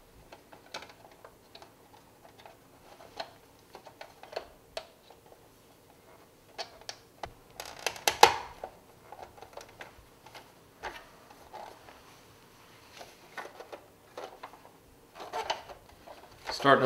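Scattered light plastic clicks and taps as the clear canopy of a 1981 Kenner Slave I toy is fitted back into place and the toy is handled. The loudest clicks come in a quick cluster about eight seconds in.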